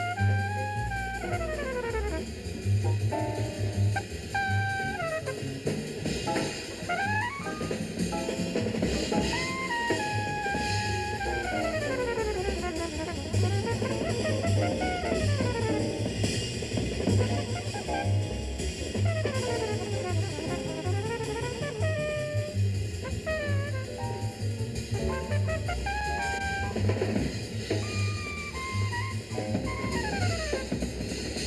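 Live jazz: a trumpet solo of gliding, bending phrases over a bass line that steps from note to note, with a drum kit keeping time on cymbals and drums.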